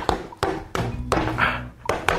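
A stapler driven by hand into a fabric-covered vest: about five sharp clacks in two seconds.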